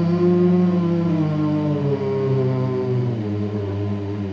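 Slow, sustained music: several held tones sounding together, their pitch sliding gently downward over the first three seconds and then holding steady.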